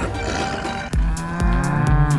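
A cow mooing: one long call starting about halfway through, over background music with a steady beat.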